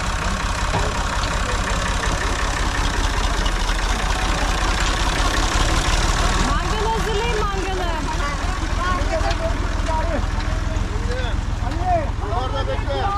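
A red Uzel farm tractor's diesel engine idling steadily, with a low, even rumble.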